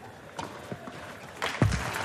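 Tennis ball struck by rackets in a rally on a clay court: a few sharp hits in the first second, then crowd applause rising in the second half.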